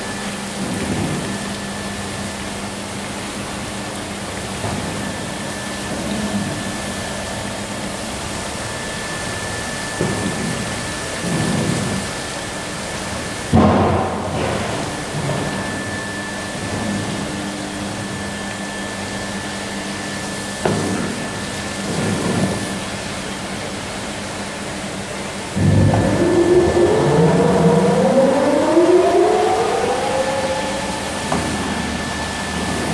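Automatic carpet washing machine running: a steady motor hum and a high steady tone under a rush of water spray, with a few knocks. About 25 seconds in it grows louder as a rising whine sets in.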